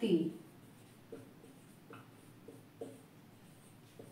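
Marker pen writing on a whiteboard: a few faint, short strokes as a word is written out.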